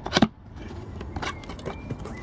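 Cardboard box being opened by hand: a sharp rip of cardboard or tape near the start, then lighter scraping, clicks and rustling as the flaps are worked loose.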